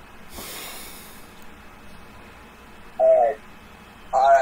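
A man breathing out audibly into a close webcam microphone, a breathy hiss lasting about a second, followed about three seconds in by a short voiced sound from him.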